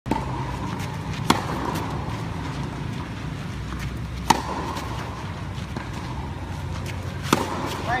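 Tennis racket striking the ball on topspin forehands: three sharp, loud hits about three seconds apart, with fainter knocks between them, over a steady low hum.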